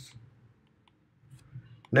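A few faint clicks of a stylus tapping on a tablet screen during handwriting, over near silence.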